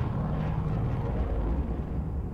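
A steady low rumble from the anime episode's soundtrack.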